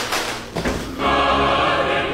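A choir singing a long held chord, used as a sound effect, coming in about a second in after a short rush of noise.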